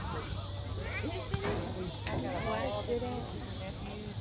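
Several people talking indistinctly, their voices overlapping, over a steady low hum, with one short sharp knock about a third of the way in.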